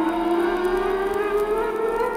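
Space-age orchestral music: a siren-like tone glides slowly and steadily upward in pitch over sustained chords.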